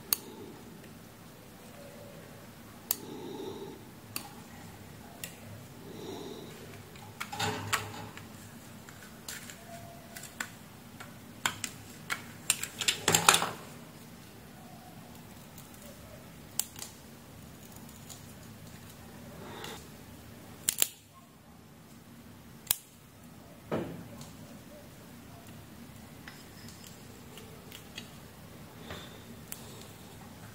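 Small metal tweezers clicking and scraping against a fan motor's sleeved leads and stator windings in scattered, irregular taps, with a busier run of clicks about halfway through.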